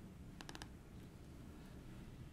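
Quiet room tone with a quick run of three or four small clicks about half a second in, from a laptop being operated at the podium to start a demo.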